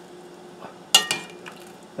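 A metal spoon clinks against a metal pot: one sharp ringing clink about a second in, then a lighter one, over a faint steady hum.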